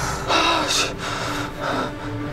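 A man's heavy sigh of relief, a long out-breath, followed by a shorter, weaker breath near the end.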